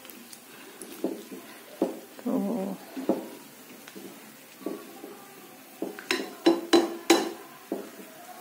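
Metal cookware clinking: scattered quiet knocks, then a handful of sharp clinks bunched near the end.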